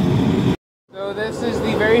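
Homemade black-pipe venturi propane burner running with a steady rushing noise. The sound cuts out to silence about half a second in, then returns with the burner firing into the furnace, and a man starts speaking near the end.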